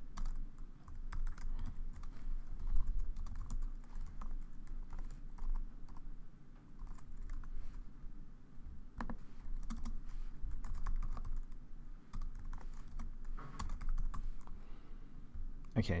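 Typing on a computer keyboard: irregular runs of key clicks, with a short lull partway through, over a low steady hum.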